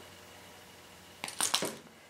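A short cluster of sharp metallic clicks about a second and a quarter in, from scissors snipping through wire-core pipe cleaners.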